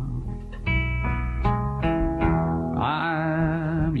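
Country guitar fill of single picked notes, each struck and ringing off, followed near the end by a long held note with vibrato in a live band performance.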